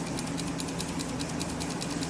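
Automotive ignition-system training board running: a steady motor hum with a fast, even ticking of the ignition sparks firing, about six a second.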